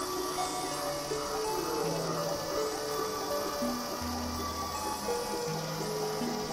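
Experimental electronic drone music played on synthesizers (Novation Supernova II and Korg microKorg XL). Sustained synth notes shift pitch every second or so over a steady high hiss, and a low bass drone comes in about four seconds in. There is no beat.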